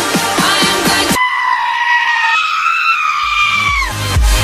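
A pop track breaks off abruptly about a second in. A long goat scream follows, held for about two and a half seconds, stepping up in pitch partway and bending down as it fades. A heavy bass beat comes in under its end.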